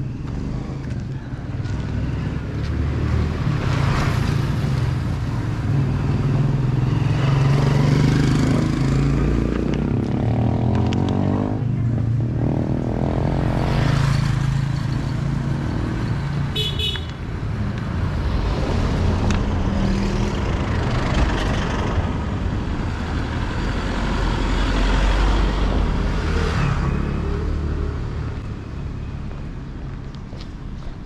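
Street traffic: motor vehicles, motorcycles among them, pass one after another, their engine noise rising and fading several times. A short horn toot sounds a little past halfway.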